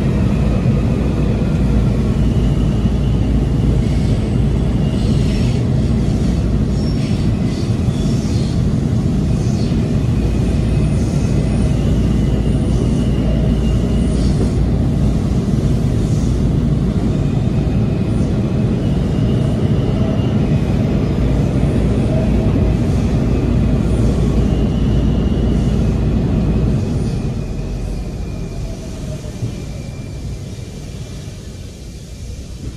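Inside a WMATA Breda 2000-series Metrorail car running at speed: loud, steady wheel-on-rail rumble, with thin high-pitched tones coming and going over it. About 27 seconds in, the rumble eases off as the train slows, with a falling whine toward the end.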